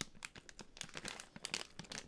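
Popcorn bag crinkling as it is handled: a run of small, irregular crackles.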